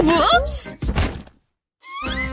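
A woman's wavering vocal exclamation mixed with a few sharp knocks and thuds. Then the sound cuts out completely for a moment, and a rising swoop leads into music near the end.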